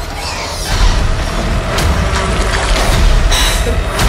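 Sci-fi horror film trailer soundtrack: a dark score over a heavy low rumble, punctuated by several sharp hits.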